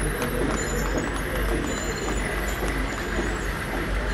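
Military pickup trucks driving slowly past in a column, engines running with a steady low rumble, amid voices in the background.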